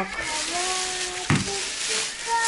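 Plastic grocery bags rustling and crinkling as shopping is unpacked, with a single knock a little over halfway through.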